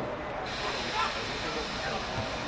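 Indistinct voices of players calling out on an outdoor football pitch, over a steady hiss of background noise.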